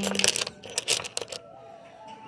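Old metal coat buttons clicking and clinking against one another as they are handled, a quick run of small sharp knocks in the first second and a half.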